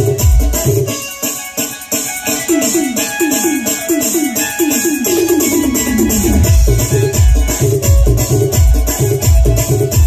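Live band music from electronic drum pads played with sticks and keyboards over loud speakers, with a steady shaker-like rattle on top. The heavy bass beat drops out about a second in, a run of short notes each falling in pitch fills the break, and the full beat comes back about two-thirds of the way through.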